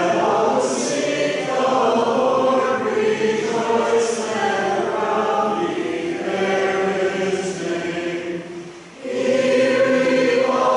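Congregation singing together in unison, long sung phrases with a short break for breath about nine seconds in.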